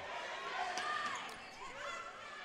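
Basketball being dribbled on a hardwood gym floor, over the murmur of a gymnasium crowd and faint distant shouting voices.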